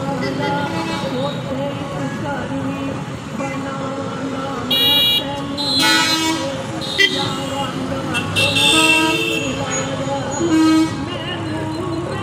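Vehicle horns honking in several short blasts over steady street traffic and voices: one about five seconds in, another around six, a longer one near nine and a short toot near eleven.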